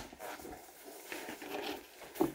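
Faint rustling and scraping of cardboard as the flaps of a shipping box are pulled open by hand.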